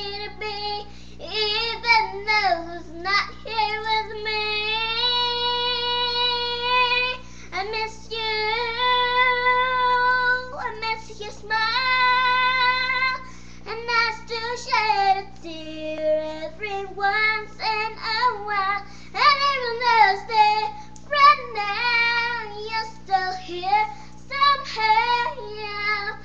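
A young girl singing, with no clear words heard: three long held notes of two to three seconds each in the first half, then quicker phrases that slide up and down in pitch.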